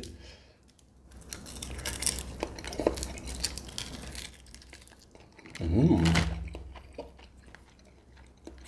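Close-miked snipping, cracking and crunching of a boiled crab's shell as it is cut with scissors and bitten open: a quick run of small cracks over a few seconds. A short voiced hum comes about six seconds in.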